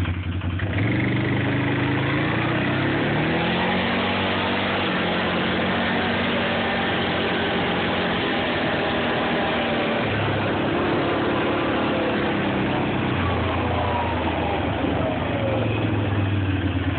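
Quad (ATV) engine running while it is ridden along a dirt trail. Engine speed rises about a second in and holds steady, then eases off and picks up again near the end.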